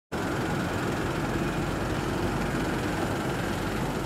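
Steady street noise with a vehicle engine running at idle, an even hum without sudden sounds.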